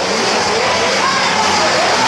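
Crowd in the street shouting and calling, many voices rising and falling over a steady din.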